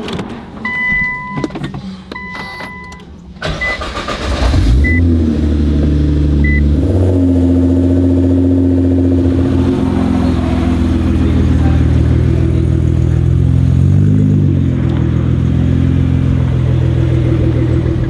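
Nissan R35 GT-R's twin-turbo V6 started after two short warning chimes, catching about four seconds in and then running at a loud, steady idle, with a brief rise and fall in pitch about three-quarters of the way through.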